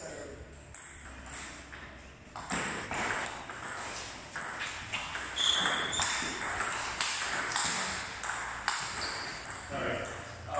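Table tennis rally: a celluloid ball clicking off paddles and bouncing on the table in quick succession, with people's voices in the background.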